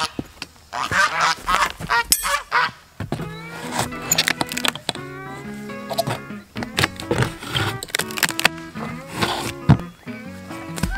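Geese honking over the first two seconds or so, with sharp knocks and cracks of weathered wooden boards being pried apart with a pry bar. Background music comes in about three seconds in and runs under the knocks.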